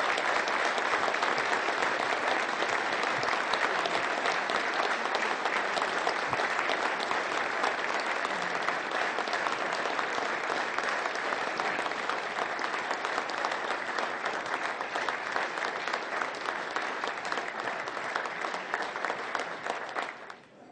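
Large audience applauding, many hands clapping steadily, fading a little near the end.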